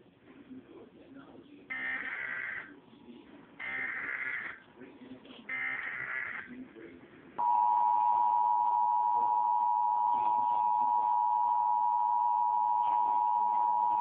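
Emergency Alert System test heard from a television: three short bursts of the warbling SAME digital header, each about a second long, then about seven seconds in the steady two-tone EAS attention signal (853 and 960 Hz) comes on loud and holds.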